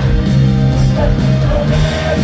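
Live rock band playing through a loud, amplified instrumental stretch: electric bass and guitar over a drum kit, with cymbal hits keeping a steady beat.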